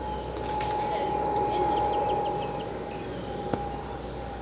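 Outdoor ambience: birds chirping, with a quick run of short chirps about a second and a half in, over a steady high-pitched drone. A single sharp click sounds near the end.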